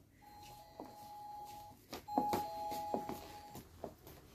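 Electronic shop-door chime sounding twice, each time a higher note joined by a lower one and held about a second and a half, with a few light knocks among the tones.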